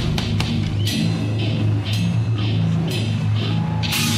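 Heavy metal band playing an instrumental passage with no vocals: low sustained guitar and bass notes that shift every half second or so, over drums and repeated cymbal hits.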